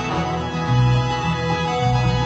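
Bluegrass band playing an instrumental break with no singing: guitars and fiddle over a bass line stepping between low notes.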